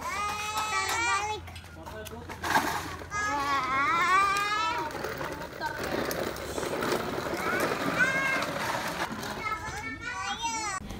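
Young children's voices shouting and squealing in play. The high-pitched calls come in bursts near the start, again a few seconds in, and once more near the end.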